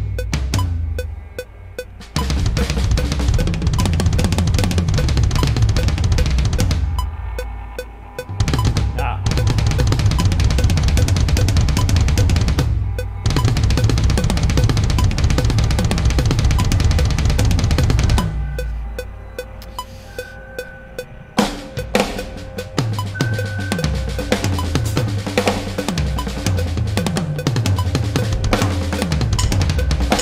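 Electronic drum kit played hard along to a backing track with bass, a full metal-style groove of kick, snare and cymbals that drops out briefly several times before coming back in.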